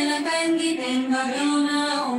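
A woman's singing voice, unaccompanied, carrying a slow melody of held notes that step up and down in pitch.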